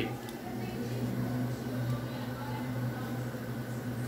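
Steady low hum under faint room noise.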